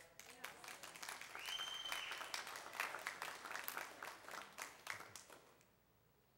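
Congregation applauding, dense clapping that thins out and stops near the end. A brief high steady tone sounds over the clapping about a second and a half in.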